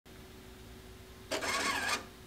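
Epson printer starting up after its button is pressed: a faint steady hum, then about a second and a third in its motors start up with a loud whirring that wavers in pitch.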